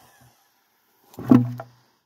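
A single short vocal sound from a man, a low hum or grunt lasting about half a second, a little over a second in; otherwise near quiet.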